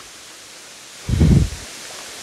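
Steady rushing of a waterfall's water. A little after a second in comes a brief low rumble of about half a second, louder than the water, from wind or handling on the microphone.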